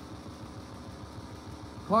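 Steady, even background noise with no distinct events. A man's commentary voice begins right at the end.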